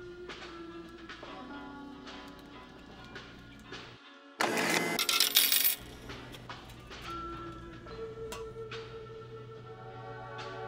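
Coins clattering out of a bill-and-coin change machine into its payout tray for about a second and a half, about midway through. Background music plays throughout.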